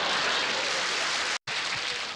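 A loud, even rush of noise, like hiss or static, with no voice in it, cut off abruptly about one and a half seconds in by a short dropout to silence.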